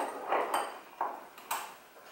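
Small steel drill-press vise being tightened by its handle: three short metallic clinks, about half a second apart.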